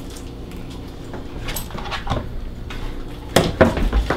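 A few light kitchen clicks, then a sharp smack of a wooden spoon about three and a half seconds in, followed by a couple of quicker knocks.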